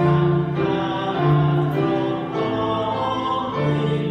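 A hymn sung with keyboard accompaniment, held notes moving from chord to chord every second or so.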